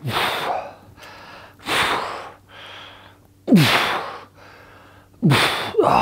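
A man breathing hard through a set of dumbbell curls. There are four forceful exhales, one about every second and a half to two seconds, with quieter breaths between them. The last two exhales carry a short grunt that drops in pitch.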